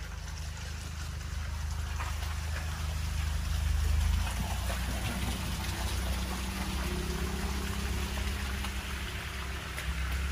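A car passing slowly along a wet, slushy road: tyres hissing through the slush over a low engine rumble, growing louder over the first few seconds.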